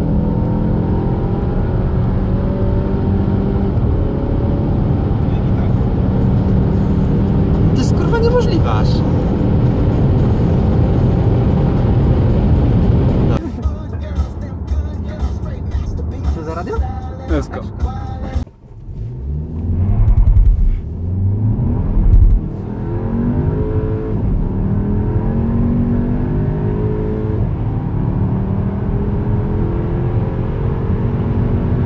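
Skoda Superb Sportline's 2.0 TSI turbocharged four-cylinder engine pulling hard under acceleration, heard inside the cabin, its pitch climbing steadily. About halfway through the sound turns rougher and uneven, with a sudden dip and two loud low bursts, before the engine's pitch rises again.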